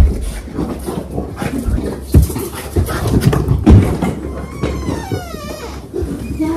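A small dog whining at an arriving visitor, with a drawn-out whine that falls in pitch near the end. Several dull thumps of bags being handled and set down come before it.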